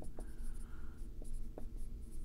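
Dry-erase marker writing on a whiteboard: a run of short scratchy strokes and light taps as letters are written.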